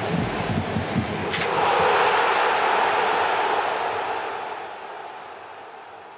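A roar of noise in the intro, swelling about a second and a half in and then fading away slowly.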